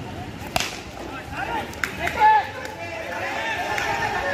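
A cricket bat hits a tennis ball with a sharp crack about half a second in. A smaller knock follows, then players shouting as the ball is struck into the outfield.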